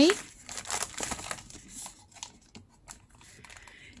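A newspaper gift bag rustling and crinkling as it is folded flat and pressed down by hand, in irregular bursts that die away after about two seconds.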